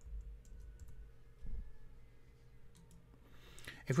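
Faint clicks of a computer keyboard: a few scattered keystrokes typing a web address, with a soft low thump about a second and a half in.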